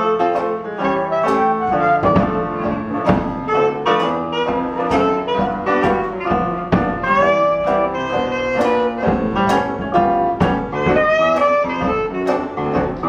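Traditional New Orleans jazz band playing an instrumental chorus: a clarinet carries the melody over banjo strumming and the rhythm section, with a steady beat.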